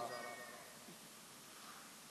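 A pause between sentences of a man's amplified speech in a large hall. The echo of his last words fades away over about a second, leaving near-silent room tone with a faint, brief high squeak shortly after the start.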